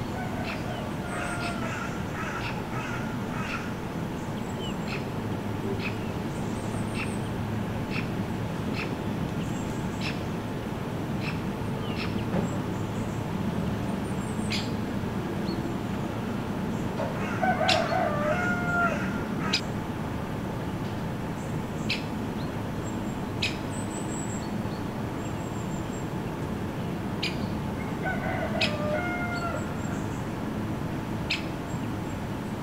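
Outdoor ambience: a steady low rumble with scattered sharp clicks, and a bird calling in short bouts, about a second in, loudest a little past the middle, and again near the end.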